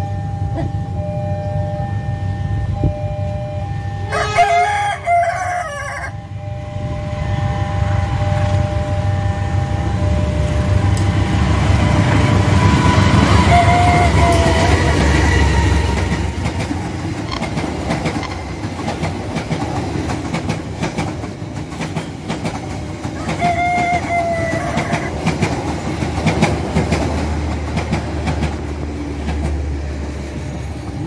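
A diesel-hauled passenger train passing close by on the main line, its rumble and wheel clatter building to a peak in the middle and fading toward the end. A rooster crows once about four seconds in.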